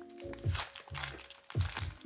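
Background music with a beat, over the crinkling of a foil Pokémon booster-pack wrapper being handled and opened.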